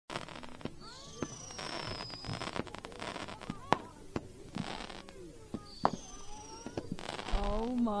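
Consumer fireworks going off: scattered sharp cracks and pops, two high whistles that slide slowly downward, each lasting about a second, and short bursts of hiss from the burning effects.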